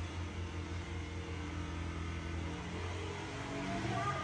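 Steady low hum of a small electric motor with a faint hiss, unchanging throughout.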